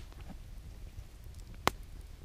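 Wood campfire burning, a low steady noise of the flames with one sharp crackling pop near the end.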